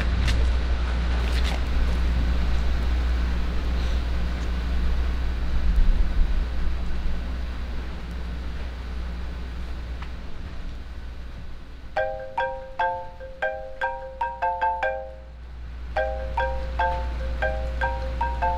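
A steady low outdoor rumble, then from about twelve seconds in a phone ringtone rings: a quick melody of marimba-like notes, played twice with a short gap between.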